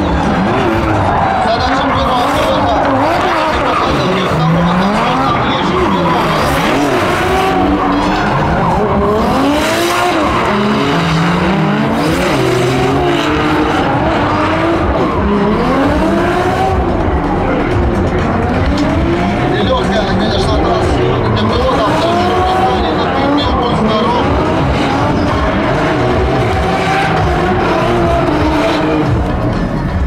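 Two drift cars sliding in tandem, their engines revving up and dropping back again and again at high revs, with tyres squealing and skidding on the asphalt.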